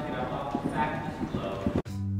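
Hoofbeats of horses moving on soft sand arena footing, an irregular patter of dull knocks, with a faint voice in the background. The sound cuts off abruptly near the end.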